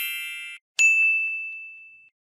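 End-screen sound effects: a shimmering high chime fading out, then a sharp click and a single high ding that rings on and dies away over about a second, with a couple of faint ticks under it.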